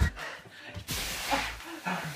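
A person flopping onto a bean bag: a sudden short rush of rustling noise about a second in, followed by brief laughter.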